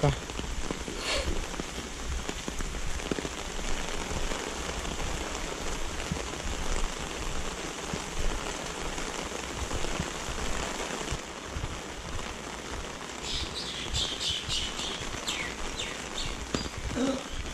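Steady rain falling on paved ground and surfaces, an even hiss throughout. A bird chirps several times near the end.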